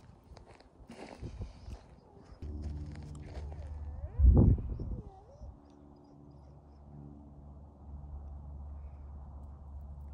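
Footsteps on dry dirt ground for the first couple of seconds, then a steady low hum. A brief loud low thump comes about four seconds in.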